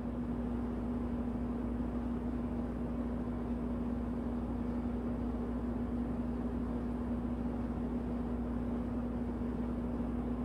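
Steady background hum with a single constant low tone under an even low noise, unchanging throughout.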